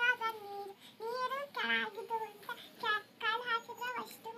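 A young girl singing in short phrases, with some notes held and gliding.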